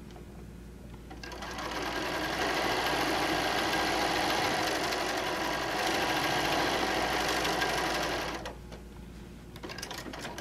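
Sewing machine stitching a quilt seam. It runs up to speed a second or so in, sews steadily for about six seconds, then stops, followed by a few light clicks.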